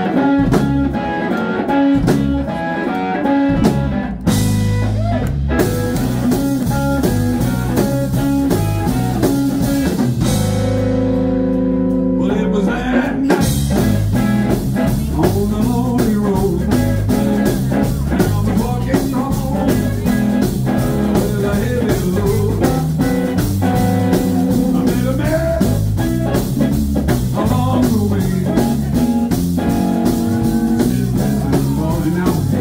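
Live blues-rock band playing: electric guitar, electric bass and drum kit, heard through a phone's microphone in the room. About ten seconds in the drums drop out under a held chord, and the full band comes back in a few seconds later with steady cymbal beats.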